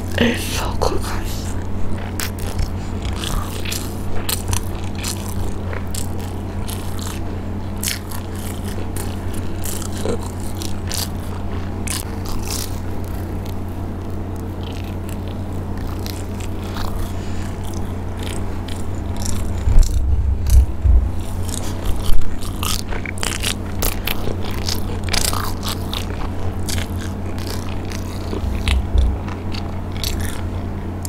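Close-miked eating sounds of a mozzarella corn dog: the fried crumb coating crunching and crackling between bites and wet chewing, with the loudest crunches a little past the middle. A steady low hum runs underneath.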